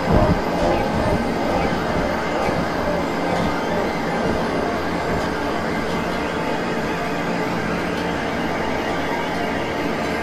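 A dense, steady wash of several music recordings layered over one another and electronically processed, heard as a noisy drone with no clear beat or melody. One low thud comes right at the start.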